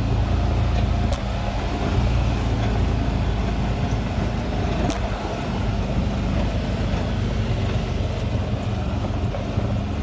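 Off-road vehicle driving slowly over a rough dirt road: the engine runs steadily under road noise, with two sharp knocks, about a second in and again about five seconds in.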